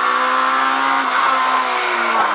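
Fiat Seicento Kit Car's small four-cylinder engine pulling hard in third gear through a rally stage, heard from inside the cabin over road and tyre hiss; its note holds steady and then eases slightly lower about a second in.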